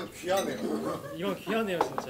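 Plates and cutlery clinking on a dining counter under voices talking, with one sharp clink near the end.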